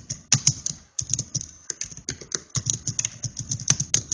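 Typing on a computer keyboard: fast, irregular keystrokes with brief pauses between runs.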